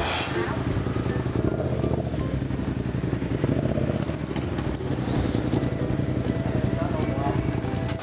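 Yamaha MT-07's parallel-twin engine running steadily at low revs as the motorcycle is ridden slowly.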